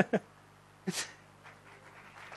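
A short breathy puff close to the microphone about a second in, then audience applause starting faintly near the end.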